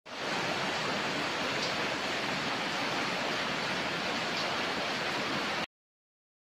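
A loud, steady rushing noise, like running water, that starts at once and cuts off abruptly near the end.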